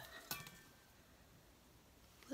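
Near silence: quiet room tone, with one faint, brief rustle of craft materials being handled just after the start.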